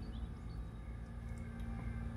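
Quiet, steady low hum with a faint held tone, and no distinct events.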